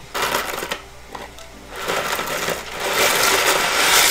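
Dry spiral pasta rattling in its cardboard box as it is tipped and shaken out into a pot of boiling water. There is a short rattle at the start, then a longer pour that grows louder toward the end.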